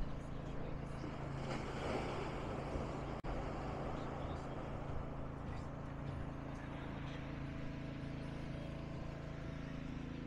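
Seaside ambience: small waves washing and breaking against the sea wall, with a louder swell about two seconds in, over a steady low motor hum.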